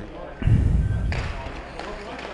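A dull, loud thud about half a second in, then the scraping of skates and sticks on the ice as an ice hockey faceoff is taken.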